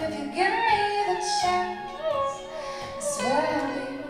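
A woman singing live to two strummed acoustic guitars, her voice sliding up and down through short sung phrases.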